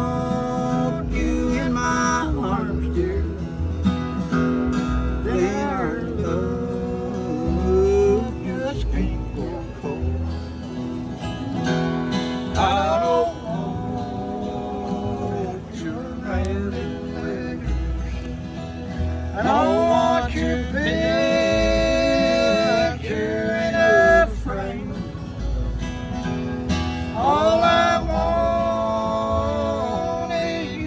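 Acoustic guitar strummed in a bluegrass song, with a man singing; the voice holds long, wavering notes about 20 to 24 seconds in.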